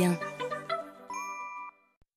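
Closing jingle of a TV advert: music with bell-like chiming notes, a fresh ding about a second in, then it cuts off to silence near the end.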